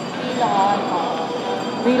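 Steady background noise of a busy shopping mall interior, with a short snatch of a voice about half a second in.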